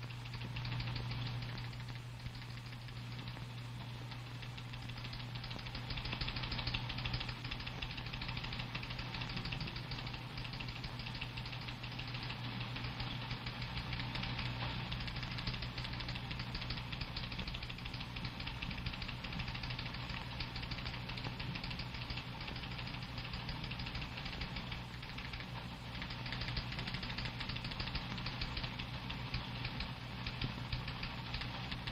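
Steady low electrical hum with crackle and hiss, the background noise of an old broadcast recording, with no speech or music.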